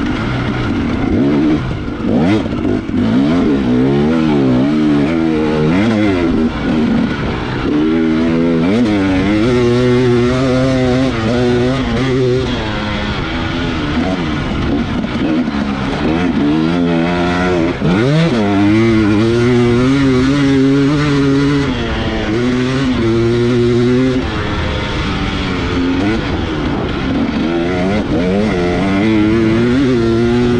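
Two-stroke 300 cc dirt bike engine, a 2018 TX300 with a Keihin carburettor, revving up and down repeatedly as it is ridden hard through the gears.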